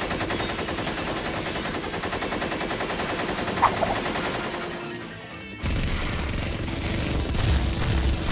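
Cartoon battle sound effects: rapid machine-gun fire for about five seconds over battle music, then a deeper, louder rumble of explosions for the rest.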